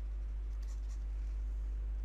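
Faint scratching strokes of a stylus on a pen tablet as a word is handwritten, over a steady low electrical hum.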